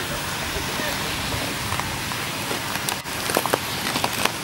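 Indistinct voices over a steady hiss of background noise, with a few short clicks near the end.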